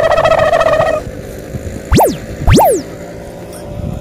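Edited-in comic sound effects. A loud buzzing, fluttering held tone lasts about the first second. About two seconds in come two quick swoosh sweeps just over half a second apart, each shooting up in pitch and falling back.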